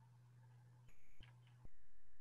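Quiet video-call line: faint room tone with a steady low hum. A louder hiss cuts in abruptly about a second in, drops out, then comes back just before the end, as another participant's microphone opens.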